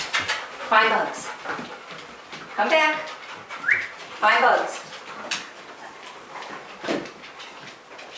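A leashed detection dog and its handler moving about a bedroom on a hardwood floor during a bed bug search: three short voiced calls a second or two apart, a brief rising squeak, and light knocks and footsteps.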